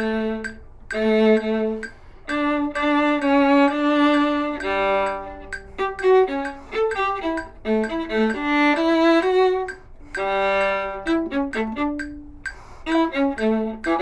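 Solo viola bowed, playing a melodic passage of held notes and quicker note runs in phrases, with brief breaks between them.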